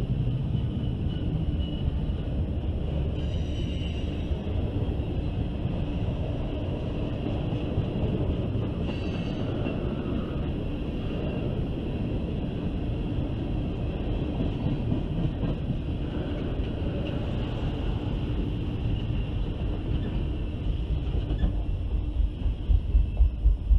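Freight cars rolling past on jointed rail: a steady low rumble of steel wheels on track. Brief high-pitched wheel squeals ring out twice, about three seconds in and again near nine seconds.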